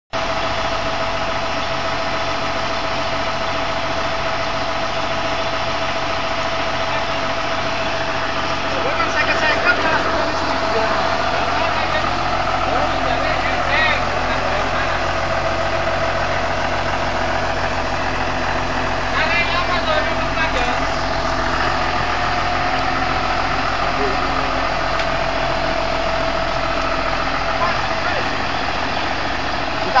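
John Deere 7505 tractor's diesel engine running at a steady pitch while the tractor is stuck in mud with its front wheels reared up. Voices call out briefly a few times in the middle.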